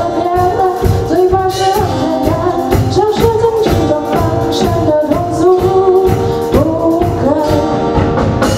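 Live band performing a pop song: a female vocalist singing over acoustic guitars and a drum kit keeping a steady beat.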